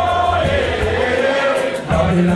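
Live roots-reggae band playing, with two male singers' voices over it; a sung note is held at the start, and the deep bass thins out about half a second in.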